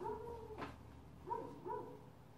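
A dog barking faintly: a drawn-out, high bark at the start, then two short ones about a second and a half in.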